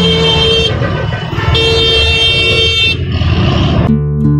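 A vehicle horn sounding in two long, steady blasts, the first ending just under a second in and the second lasting about a second, over the continuous rumble of engines in packed, slow-moving traffic.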